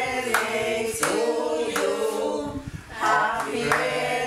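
A small group of men's and women's voices singing a birthday song together, unaccompanied, in sustained phrases with a short breath about three seconds in.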